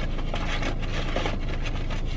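Close-up eating sounds: chewing with irregular crackling and rubbing, over a steady low hum.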